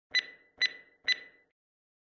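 Three short electronic beeps about half a second apart, each a high ping that dies away quickly, as an intro sound effect.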